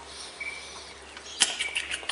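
A man drinking from a bottle: faint swallowing with a couple of small high squeaks, then a few short sharp clicks and smacks about one and a half seconds in as the bottle comes off his lips.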